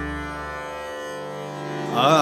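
Harmonium notes held steadily in Raag Malkauns, with the deep ring of a tabla stroke fading away in the first half-second. The sound swells again near the end as the next sung phrase begins.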